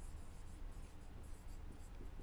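Whiteboard marker writing on a whiteboard: faint, quick, scratchy strokes as a word is written out.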